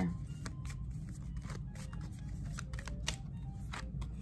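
Tarot cards being shuffled and handled: a scattered run of light card clicks and flicks, over a steady low background hum.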